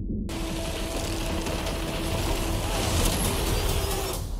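Film trailer sound effects: a loud, noisy rush of crashing and splintering as a wooden dock is smashed apart, with a steady low drone underneath. It starts suddenly just after the beginning and cuts off at the end.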